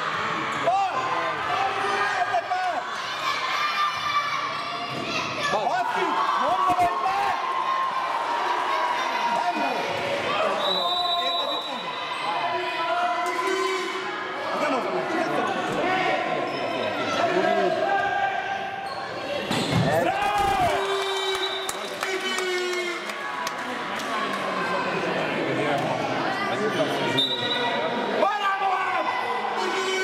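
A handball bouncing on the sports hall floor as players dribble, among many children's high-pitched shouts and cheers echoing around a large hall.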